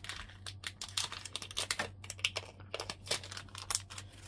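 Small plastic packaging being handled: an irregular run of light clicks and crinkles as fingers work with the tiny embellishments.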